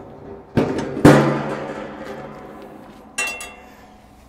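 Metal portable barbecue being set onto a steel bumper-mounted bracket: a knock, then a loud metallic clank about a second in that rings and fades over a couple of seconds, and a light clink near the end.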